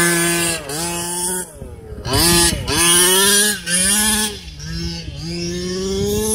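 Losi 5ive-T 1/5-scale RC truck's small two-stroke gasoline engine revving hard, its pitch rising and falling several times as the throttle is blipped and the truck is driven across grass.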